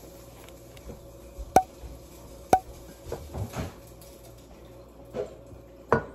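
Two sharp clinks on a glass measuring pitcher, about a second apart, each with a brief ring, then a few softer knocks and handling sounds as tea bags are put into it.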